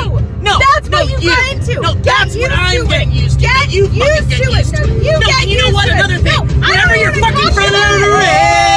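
A man and a woman arguing, talking loudly over each other, with the steady low drone of the car's engine and road noise inside the cabin underneath.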